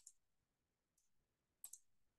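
Faint computer mouse clicks in near silence: a quick pair at the start, a fainter click about a second in, and another quick pair near the end.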